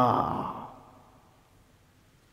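A man's drawn-out last word trails off and fades within the first second, followed by near silence: room tone.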